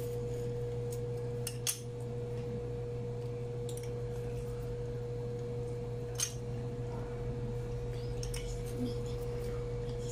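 A steady humming tone with a low hum beneath it, and a few short clicks from a metal hand-held lime squeezer pressing lime halves.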